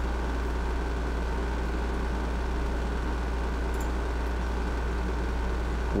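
A steady low hum with a faint even hiss underneath, unchanging throughout: background room or equipment noise.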